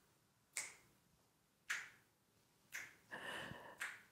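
Four finger snaps, about one a second, made by hands snapping at the high, side and low points of an arm-coordination exercise.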